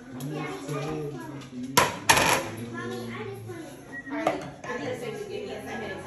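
Glass plates clinking on a kitchen counter: two sharp clinks close together about two seconds in.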